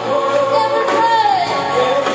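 Live church worship song: a praise team singing a melody with held, gliding notes over steady instrumental chords.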